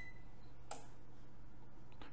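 Steady low background hum and hiss of a voice recording, with one faint click about two-thirds of a second in.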